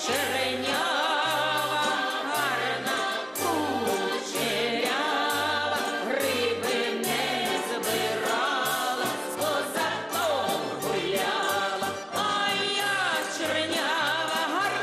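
Folk ensemble music: a choir singing a lively song over a bouncing bass line with a regular beat.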